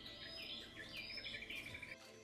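Forest birds calling: a series of short, high chirping notes, then a rapid trill in the second half.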